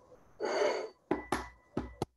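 An egg tapped three times against the rim of a bowl to crack its shell: short, sharp knocks in the second half, after a brief breathy sound.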